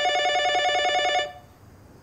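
Telephone ringing: one fast-trilling electronic ring, loud, lasting about a second and stopping, the start of an incoming call.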